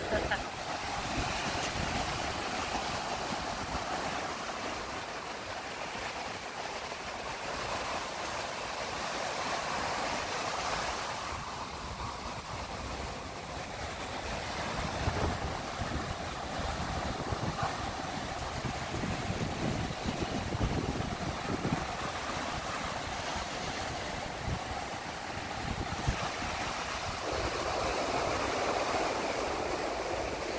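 Ocean surf breaking and washing up the beach, a steady rushing wash, with wind buffeting the microphone.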